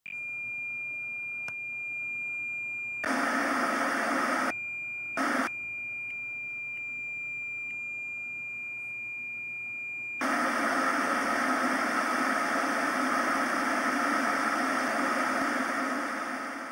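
Simulated TV test-pattern sound: a steady high-pitched beep tone, broken twice by short bursts of loud TV-static hiss (about three seconds in and again about five seconds in). About ten seconds in the tone gives way to continuous, louder TV-static hiss.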